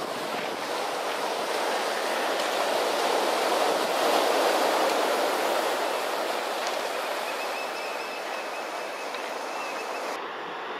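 Ocean surf washing onto the rocky shore, a steady rush of water that swells to its loudest about four seconds in and then eases.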